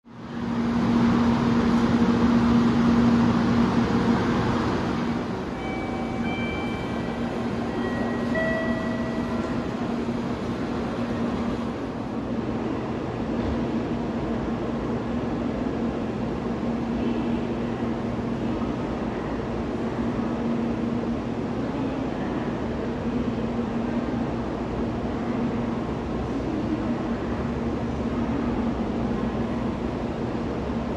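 Shinkansen station platform ambience: a steady low train rumble with a constant hum, louder for the first few seconds. A few brief high-pitched tones sound around six to nine seconds in.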